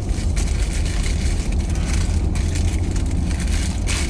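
Car cabin noise while driving: a steady low rumble of engine and road, with no other clear event.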